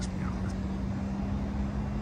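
A steady low hum and rumble with one constant low tone, unchanging throughout, from an engine or machine running somewhere outdoors.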